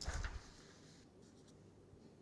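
A sheet of paper handled briefly, then a felt-tip marker writing on paper in a few faint strokes.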